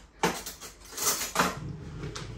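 A few light knocks and clinks of kitchenware being handled: a sudden one just after the start and more around a second in.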